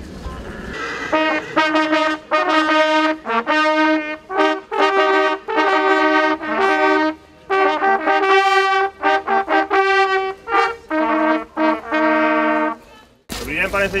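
A group of brass fanfare trumpets playing a fanfare in two parts, with short repeated notes and longer held ones. It starts about a second in and cuts off suddenly shortly before the end.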